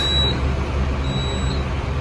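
Westinghouse high-speed traction elevator car travelling fast in its hoistway: a steady low rumble in the cab, with a faint high whine that comes and goes.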